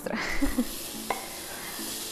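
Chopped onion and garlic dropping into hot olive oil in a frying pan, sizzling steadily as they start to fry, with a single light knock about a second in.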